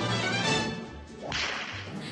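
Western film theme music with a whip crack about a second and a half in.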